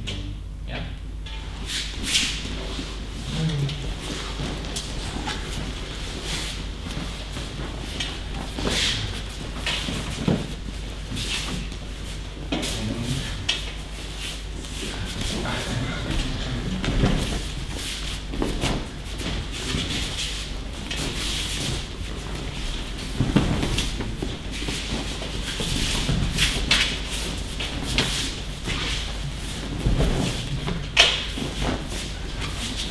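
Aikido pairs practising throws on mats: bare feet shuffling and stepping, uniforms rustling, and scattered soft thuds of partners falling, echoing in a large hall.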